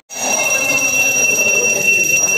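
Worship bell ringing continuously during an arati before the goddess's idol, a steady high ringing that starts abruptly just after the beginning.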